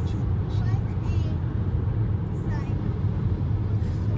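Steady road and engine noise heard inside the cabin of a car cruising at highway speed: a constant low rumble of tyres and engine.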